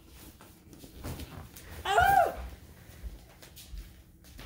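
A single short, high-pitched squeal-like call about two seconds in, rising and then falling in pitch.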